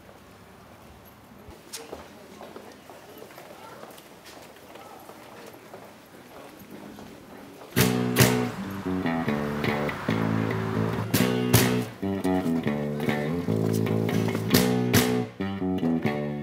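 Faint street background, then strummed acoustic guitar starts suddenly about halfway through and keeps playing in a steady rhythm: the instrumental opening of a song.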